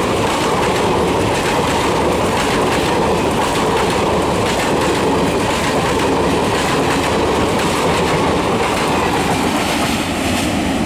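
Indian Railways ICF passenger coaches of an express train passing close by at speed: a loud, steady rumble with the clatter of wheels over rail joints.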